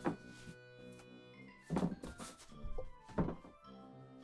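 A few dull thunks and knocks from a costumed display mannequin being handled and shifted, over quiet background music.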